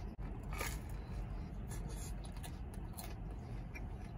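Chewing a mouthful of crispy pizza crust: soft, scattered crunching and scraping over a low steady rumble in a car cabin.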